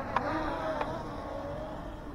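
S135 Pro brushless mini drone's propellers buzzing, the pitch wavering up and down as the motors change speed, with two short clicks in the first second.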